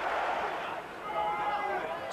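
Football stadium crowd noise: a general roar for about a second, then quieter with a few faint held sung notes from the crowd.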